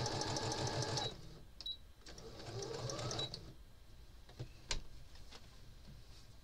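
Electric domestic sewing machine stitching in a fast, steady rhythm that stops about a second in. It runs again briefly a second later, its motor pitch rising, then stops again. A few light clicks follow.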